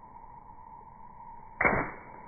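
A thrown water balloon bursting as it hits a person, a sudden splash of water a little over a second and a half in.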